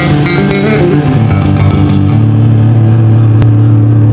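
Electric guitar and electric bass playing an instrumental rock passage. A run of quick guitar notes gives way about halfway through to a held chord ringing over a steady bass note.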